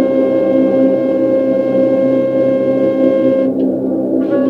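Improvised ambient sound-bath music from a synthesizer and flute, picked up by a smartphone: a steady drone of held tones. The higher tones drop away near the end.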